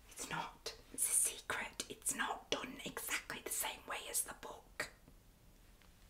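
A woman whispering a few soft words, breathy and without much voice, which stop about a second before the end.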